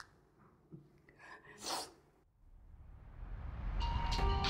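Quiet room tone with a short, sharp breath just under two seconds in, then background music fading in and swelling over the last second and a half.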